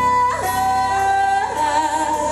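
A woman singing long held notes into a microphone over live accompaniment: a high sustained note drops to a lower held note about half a second in, then rises again with vibrato near the end.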